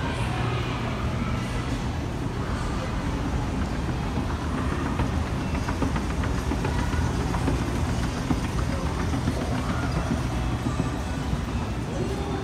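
Steady low hum and drone of a shopping-mall interior, with indistinct voices and small clatters in the background.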